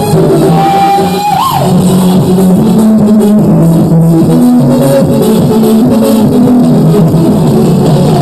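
Loud live band music with electric guitar and keyboard; one held high note bends up and drops away about a second and a half in.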